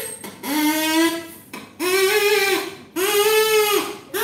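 A drinking straw blown as a reed pipe (a straw oboe), sounding three reedy notes of about a second each. The first note is lower and the next two step up in pitch as the straw is cut shorter.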